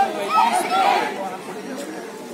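Chatter of several voices talking over one another, busiest in the first second and quieter after.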